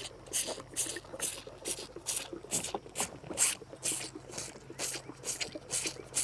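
A bull calf sucking milk from a feeding bottle's rubber nipple: rhythmic wet slurping, about two sucks a second.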